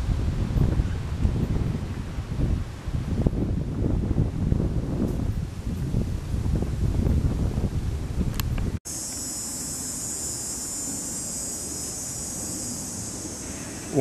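Wind buffeting the microphone in uneven low gusts. After an abrupt cut about nine seconds in, a steady high-pitched hiss takes over at an even level.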